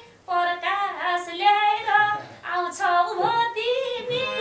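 A woman singing a Nepali dohori folk-song line in two phrases, with a short breath between them, and little or no instrumental backing.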